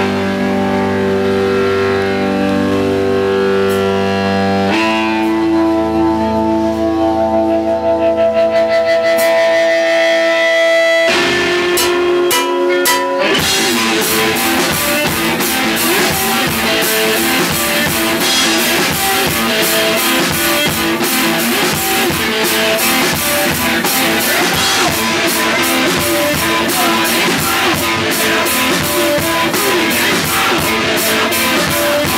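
Live blues-rock played on electric guitar and drum kit: the guitar holds long sustained notes that change twice, then from about thirteen seconds in the drums come in and the band plays at full tilt.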